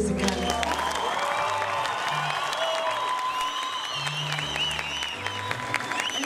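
Audience applause with cheering and high wavering cries, over music with a low bass line.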